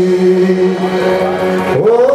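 Male singer holding one long sung note, sliding up to a higher note near the end, in a live performance of a Greek song.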